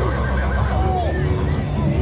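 A horse neighing amid a crowd's voices, with horses' hooves stepping on packed dirt.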